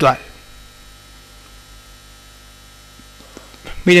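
Steady electrical mains hum, a low buzz with many overtones, runs through a pause in a man's talk. A spoken word ends at the very start, and speech begins again near the end.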